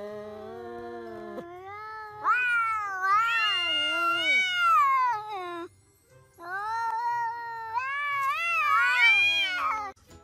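A domestic cat yowling in three long, drawn-out calls, each wavering up and down in pitch, with short breaks between them.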